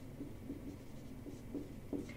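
Dry-erase marker writing on a whiteboard: faint, short, irregular strokes as figures are written, over a low steady hum.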